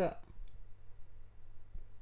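A few faint clicks and knocks of a wooden spoon stirring in the inner pot of a Cookeo multicooker.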